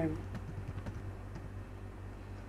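A quick run of keystrokes on a computer keyboard as a short word is typed in, over a low steady hum.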